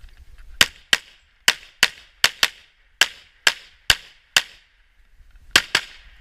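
Pistol gunfire: a fast string of ten shots in under four seconds, then a pause of about a second and two more quick shots near the end.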